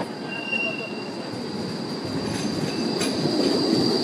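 City tram passing close by, its steel wheels squealing on the rails in one long, high, steady squeal over the low rumble of its running gear. A second, shorter squeal at a different pitch comes near the start.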